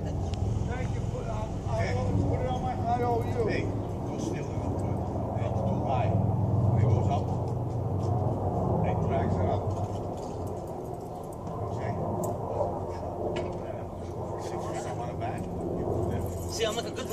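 Men's voices talking at a distance over a steady low mechanical hum.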